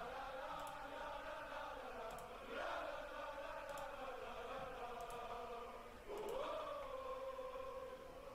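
Football stadium crowd singing a sustained chant, heard faintly through the match broadcast, with the melody shifting about two and a half seconds in and again about six seconds in.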